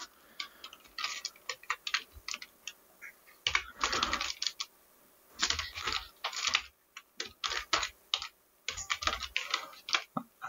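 Typing on a computer keyboard: irregular runs of keystrokes with short pauses between them, the densest runs a few seconds in.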